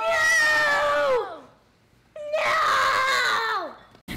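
Two long, drawn-out children's screams of dismay, each about a second and a half, held on one pitch and then falling away at the end, with a short pause between them.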